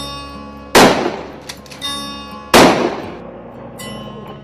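Two loud gunshots, about two seconds apart, each with a long ringing tail, over background music with sustained tones.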